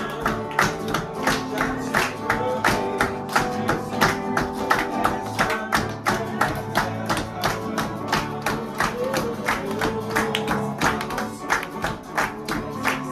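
A group clapping hands in a steady rhythm to a worship song, with acoustic guitar and voices singing.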